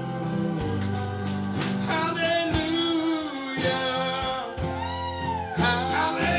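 A live band plays a slow song on acoustic and electric guitars with drums, and a singer holds long, wavering notes.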